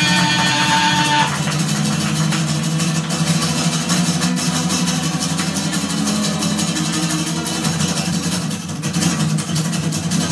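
Acoustic guitar strummed hard in a rapid, steady rhythm. A man's held sung note ends about a second in, leaving the guitar alone.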